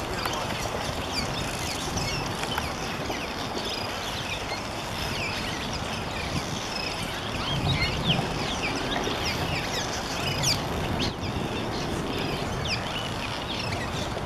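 A large colony of cliff swallows calling: a dense chorus of short, overlapping chirps and creaky notes, many sliding down in pitch, going on without a break over a steady low rumble.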